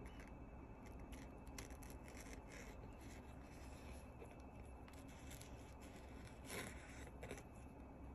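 Faint scratching of a freshly sharpened folding-knife edge pushed into a hanging sheet of paper towel, with a few light ticks over near-quiet room tone.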